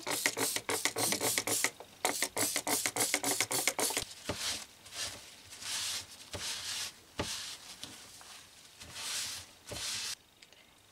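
A plastic trigger spray bottle pumped in a fast run of short squirts onto a pair of old shoe insoles for about four seconds, with a brief pause partway. A cloth is then rubbed over the insoles in softer, slower wiping strokes to clean them.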